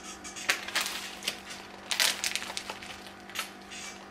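Scattered crisp crunches and crinkles: popcorn being chewed and a plastic snack bag being handled.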